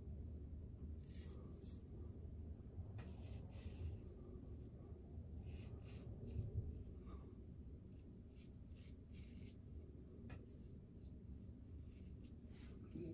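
Double-edge safety razor blade scraping through beard stubble in short strokes against the grain: a string of faint, brief scrapes at irregular spacing.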